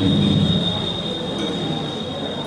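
Public-address microphone feedback: one steady high-pitched squeal through the hall's loudspeakers, with a low murmur underneath in the first half second.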